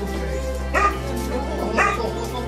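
German Shepherd yelping twice in excitement as it greets its owner, over steady background music.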